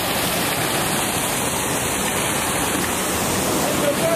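A waterfall's loud, steady rush of falling water.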